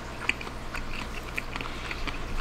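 Close-miked chewing of a mouthful of spaghetti, with wet mouth smacks and clicks at irregular intervals.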